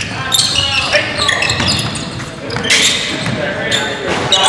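Basketball being dribbled on a hardwood gym floor, with short high sneaker squeaks and indistinct shouts from players during play.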